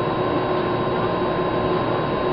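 Steady room tone: an even hiss with a faint constant hum of a few steady tones and no distinct events. Footsteps are not heard.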